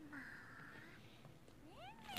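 Faint, high-pitched, meow-like "mee" cries of a small cartoon creature in the anime's soundtrack: one held cry in the first half, then a cry that rises and falls near the end.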